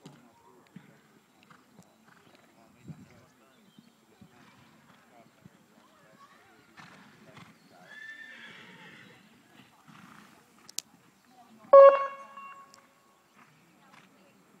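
Faint, muffled hoofbeats of a horse cantering over a sand arena surface, with a brief bending voice-like call about eight seconds in. Near the twelve-second mark comes the loudest sound, a sudden, steady-pitched call lasting about a second.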